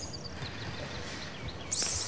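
Quiet background hiss with a few faint, high bird chirps, one quick run of them about a quarter of a second in. The hiss of the next spoken word starts at the very end.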